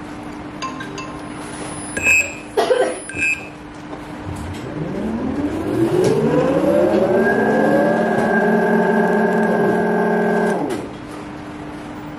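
Brushless motors going through VESC FOC motor detection: clicks and a few short high beeps about two seconds in, then the motor's whine rising in pitch as it spins up, running steady for about four seconds and stopping near the end. A steady low hum underlies it throughout.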